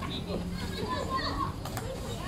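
Young voices shouting and calling out over one another during a field hockey goalmouth scramble, with a single sharp click near the end.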